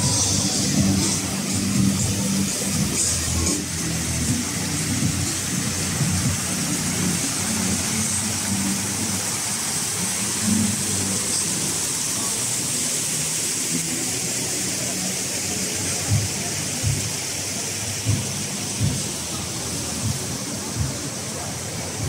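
Fountain water splashing steadily, over a murmur of the plaza, with a few soft thumps near the end.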